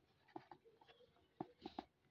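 Fingers handling a small cardboard product box: a few soft taps and rubbing scrapes of skin and cardboard, the clearest ones in the second half.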